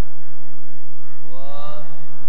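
Sikh kirtan: harmoniums holding steady notes over a low drone, with a male voice entering about a second and a half in on a rising sung phrase.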